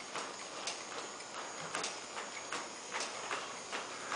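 Hoofbeats of a horse moving along the rail of an indoor arena with dirt footing, short thuds coming a few times a second.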